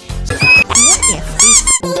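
A run of loud, high-pitched squeaks that rise and fall in pitch, over background music. They start about half a second in and break off just before the end.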